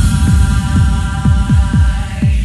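House music from a DJ mix: a steady four-on-the-floor kick drum about two beats a second under a sustained synth chord with a hissy high wash.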